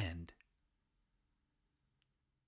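A narrator's voice speaking one short word, ending in a couple of small clicks, followed by near silence for the rest of the time.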